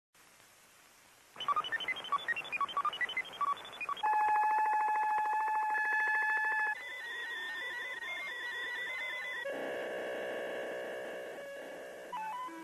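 Satellite telemetry signals played one after another, each with its own tone. After about a second and a half of near silence come rapid beeps jumping between pitches, then a steady buzzing tone about four seconds in, then a warbling tone, then a lower pulsing buzz for the last few seconds.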